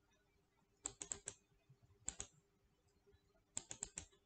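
Computer keyboard keys and mouse buttons clicking in short clusters: four quick clicks about a second in, two a second later, and four more near the end.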